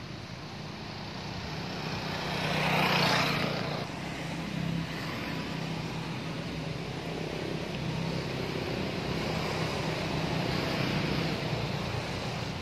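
A motor vehicle's engine running with a steady low hum, swelling to its loudest about three seconds in, as if passing close by, then settling to an even level.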